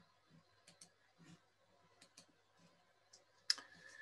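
Faint clicking at a computer, many of the clicks in quick pairs at irregular intervals. About three and a half seconds in comes a sharper, louder click, the press that advances the slide, followed by a brief faint tone.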